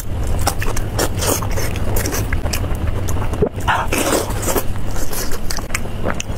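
Close-miked biting and chewing of a large piece of roasted pork belly: wet, sticky mouth sounds with many irregular small clicks and smacks. A steady low hum runs underneath.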